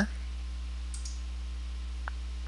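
A single faint computer mouse click about halfway through, over a steady low electrical hum.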